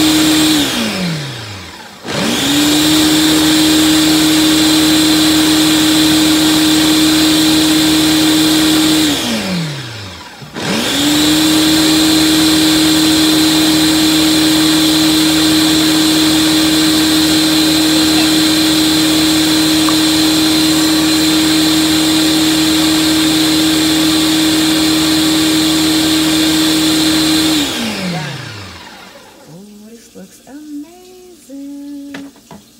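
Countertop blender puréeing a green smoothie: the motor runs at a steady high speed, winds down to a stop about two seconds in, starts again, winds down and restarts once more near ten seconds in, then spins down to a stop near the end.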